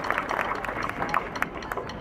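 Scattered hand-clapping from a crowd, tapering off into a low crowd murmur.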